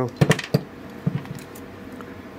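Hand-lever metal hole punch clicking as its handles are worked and the freshly punched metal pick strip is drawn out of its jaws: a few sharp metal clicks in the first half-second, then lighter clicks about a second in.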